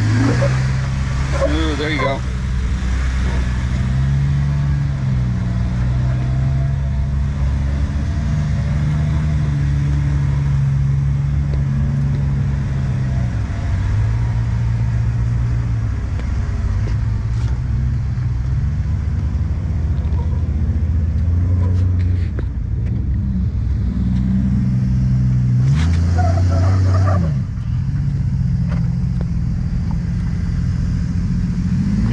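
Off-road Jeep engine running at low revs while crawling over rock, its pitch rising and falling slowly with the throttle.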